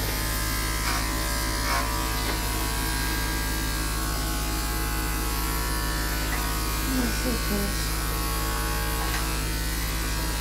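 Corded electric dog grooming clipper running with a steady buzz as it trims the fur on a small dog's head and face.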